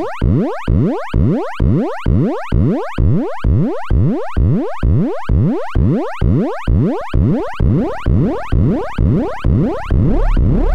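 Serge modular synthesizer: an oscillator waveshaped through the Extended ADSR, playing a rapid train of rising pitch sweeps, about three a second, each fading after its attack. A low buzz builds under it in the last couple of seconds.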